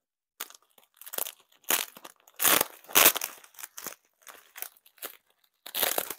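Plastic bubble wrap crinkling and crackling in irregular bursts as it is handled and unwrapped. The loudest bursts come about halfway through and again near the end.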